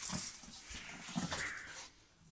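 Wire hand whisk beating creamed butter and sugar in a stainless steel bowl, scraping and clicking against the metal.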